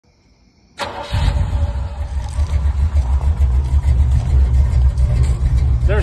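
Carbureted engine of a square-body Chevrolet C10 pickup idling with a steady low rumble, which comes in suddenly about a second in.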